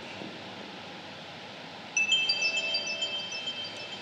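Chimes ringing: about halfway through, several high, clear notes are struck one after another and keep ringing, over a faint steady room hiss.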